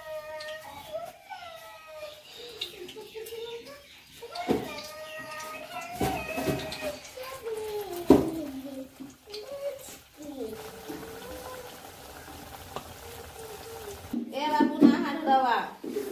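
Voices talking in the background in a small room, indistinct and without clear words, with a voice holding one steady sound for a few seconds in the second half.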